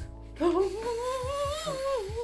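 Background music with a wordless humming vocal line, one long note rising slowly then falling near the end, over a steady low accompaniment.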